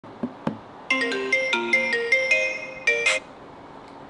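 Two sharp clicks, then a mobile phone ringtone plays a quick melody of bright, chiming notes and cuts off suddenly about three seconds in, as the call is answered.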